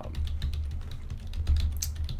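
Computer keyboard being typed on: a quick, steady run of keystrokes as a search query is entered.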